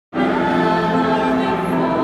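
Choral music: a choir singing long held chords that change every so often, starting suddenly right at the beginning.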